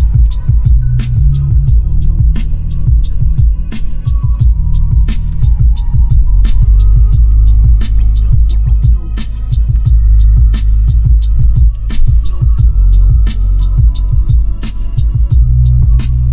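Lo-fi/chill track with heavy bass and a steady drum beat, played through a 2006 Toyota 4Runner's stock six-speaker audio system and heard inside the cabin.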